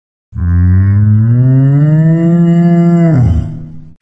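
A cow mooing: one long, loud call that rises slowly in pitch, holds, then drops away and fades near the end.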